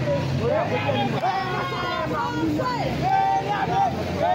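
A person's voice talking animatedly over a steady low hum.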